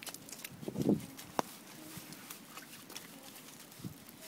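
Small boots stepping through slushy snow, with scattered sharp clicks and a brief low rustle about a second in.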